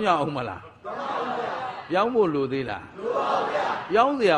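Speech: a man preaching a Buddhist sermon in Burmese, in animated phrases that swoop up and down in pitch.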